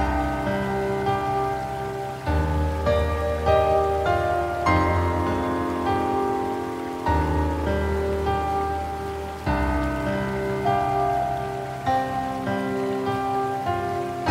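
Slow, relaxing piano music with sustained chords that change about every two and a half seconds, over a steady hiss of rain.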